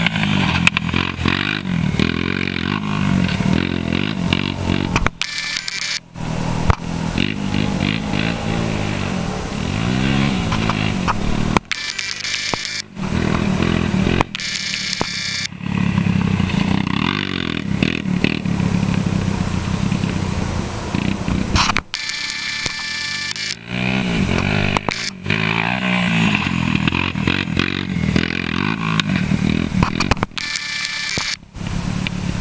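Honda TRX250EX sport quad's single-cylinder four-stroke engine, fitted with a Wiseco piston, revving up and down as it is ridden hard, its pitch rising and falling with the throttle. The sound breaks off briefly several times.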